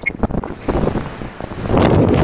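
Wind buffeting the microphone of a camera on a fast-accelerating electric scooter, gusty and loud, growing louder near the end as the speed climbs past 30 mph.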